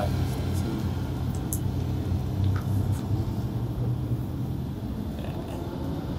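Steady low background hum, easing slightly after about four seconds, with a few faint clicks.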